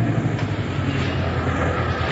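Car engine sound effect in an old radio drama, running with a steady low hum as the car pulls up to the curb.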